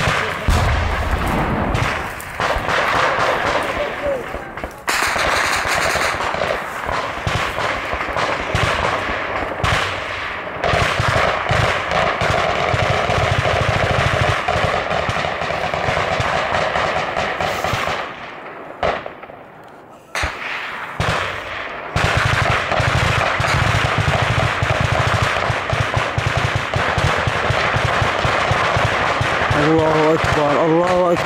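Sustained automatic gunfire from a firefight, bursts of shots packed close together, easing off briefly about two-thirds of the way through and then resuming.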